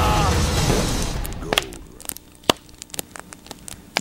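A dramatic soundtrack of music, effects and a snatch of voice fades out over the first second and a half. Then there is a low hush with a few sharp isolated clicks, the loudest about two and a half seconds in.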